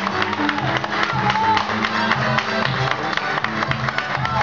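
Criollo band playing an instrumental passage of a Peruvian vals: acoustic guitar melody over electric bass, keyboard and cajón strokes.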